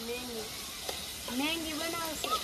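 Food sizzling in a pan on a gas stove as it is stirred with a spoon: a steady frying hiss, with a short click about a second in.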